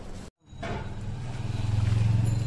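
Low motor or engine hum that grows louder toward the end, after a brief gap in the sound about a third of a second in.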